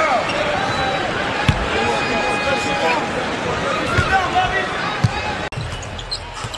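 Basketball game sound with the steady noise of an arena crowd and voices, and a basketball bouncing on the hardwood floor in a few sharp knocks. The sound breaks off briefly near the end.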